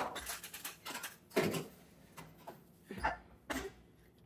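A pan of unbaked bread loaves being put into a kitchen oven: a sharp click at the start, light metallic rattling, then a couple of duller knocks as the pan goes onto the rack and the oven door is handled.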